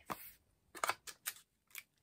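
A small cosmetics jar being opened by hand, its lid and seal worked off: several short clicks and crackles, the loudest just under a second in.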